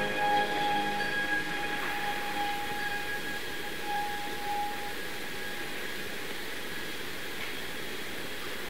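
The last held notes of the stage music fade away over the first few seconds. They leave a steady hiss of theatre room noise on an old live audience recording.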